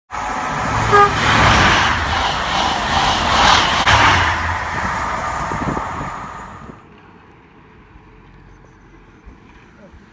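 Train passing through a station, a loud rushing noise with a short horn toot about a second in. The sound cuts off abruptly near seven seconds, leaving faint outdoor hiss.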